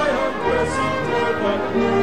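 A small church orchestra playing a hymn, with a trombone among the brass and sustained notes, including a low held note in the second half.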